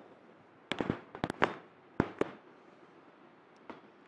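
A quick run of sharp cracks, about nine within a second and a half starting under a second in, then one faint crack near the end.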